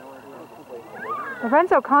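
Faint distant voices from across a playing field. About three-quarters of the way in, loud close speech starts beside the microphone, its pitch gliding up and down.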